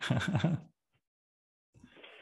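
A man's short laugh, breaking off within the first second into dead silence.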